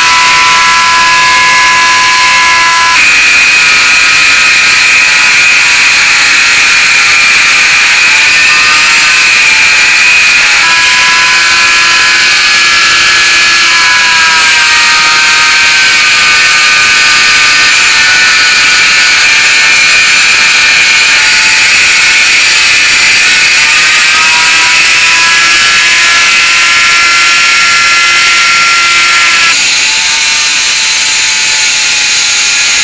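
Handheld rotary tool spinning a brass wire wheel brush at high speed as a small brass lighter part is held against it: a loud, steady high-pitched whine whose pitch wavers and shifts as the part presses on the wheel.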